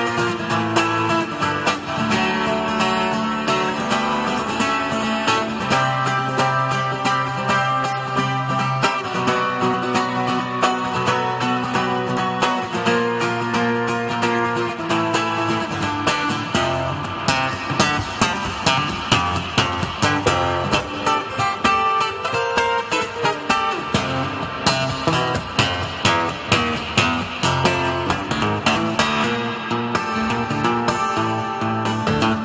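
Solo steel-string acoustic guitar played fingerstyle: an instrumental piece with picked melody and bass notes. Sharp percussive accents run throughout and fall into a more regular beat in the second half.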